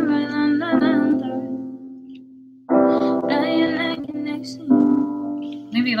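A woman singing a melody line over piano chords. The first chord rings and fades, and new chords are struck about three and five seconds in.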